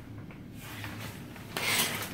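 Fabric shower curtain rubbing and brushing against the phone's microphone: a faint rustle about half a second in, then a louder, scratchy rub near the end.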